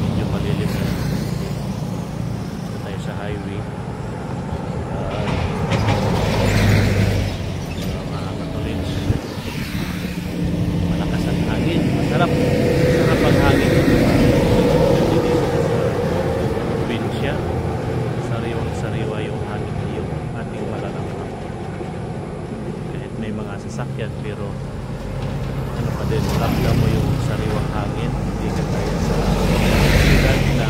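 Road traffic passing on a highway: a steady engine drone, with a loaded dump truck going by and swelling loudest around the middle, and another vehicle, a jeepney, coming up near the end.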